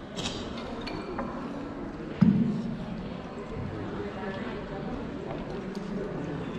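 Ca trù accompaniment: sharp clicks of the phách bamboo clappers and notes from a đàn đáy long-necked lute, with one loud trống chầu drum stroke about two seconds in that rings briefly.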